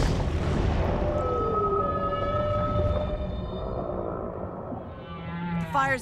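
Whale song: long, held calls with a falling glide about a second and a half in and a run of rising calls near the end, over background music.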